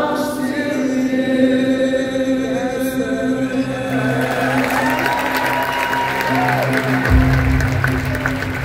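Live worship band music with sustained keys and long held sung notes, the arena crowd singing along. A deep bass note comes in about seven seconds in.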